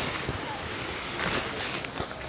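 A 150-denier ripstop polyester tent fly rustling steadily as it is lifted, thrown over a tent frame and pulled across it.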